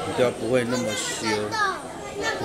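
A young child's voice in short, high-pitched phrases that rise and fall.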